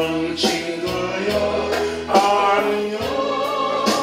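A man singing a Korean gospel song into a microphone over a backing track with a steady beat and bass line.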